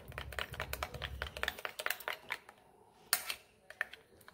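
A metal spoon beating a creamy homemade aloe vera hair pack in a glass bowl: rapid clinks and scrapes against the glass that thin out after about two seconds, with one louder clink a little after three seconds.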